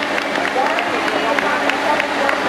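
Outdoor crowd noise: many people talking at once, steady, with no single voice standing out.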